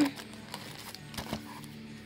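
Faint rustling and a few light clicks of plastic candy wrappers being handled in a cardboard box.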